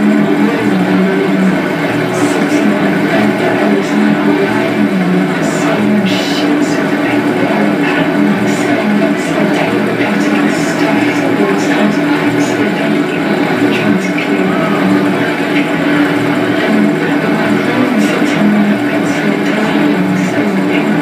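Noise music from a tabletop rig of effects pedals and electronics: a loud, unbroken droning wall of sustained tones, with scattered crackles and clicks on top.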